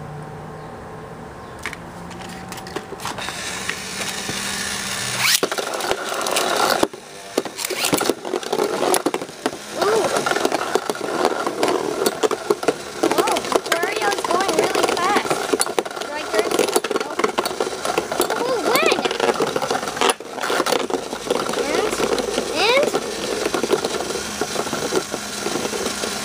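Two metal Beyblade spinning tops, Ray Striker and Hyper Aquario, spinning in a plastic Vortex Stadium: a continuous whirring scrape of the tops on the plastic floor with frequent clicks as they knock together. The spinning starts about five seconds in, after a quieter stretch with a low hum.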